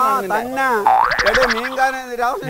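Men talking over one another, with a comic rising 'boing' sound effect about a second in, lasting about half a second.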